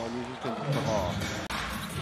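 Basketball arena sound: crowd noise in a large hall with a basketball being dribbled on the court. The background changes abruptly about one and a half seconds in.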